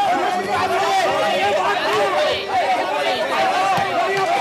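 Many voices shouting and talking over one another at once: a loud, continuous babble from a crowd of people.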